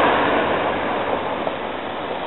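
Steady hiss of outdoor background noise with no distinct event, fading a little over the two seconds.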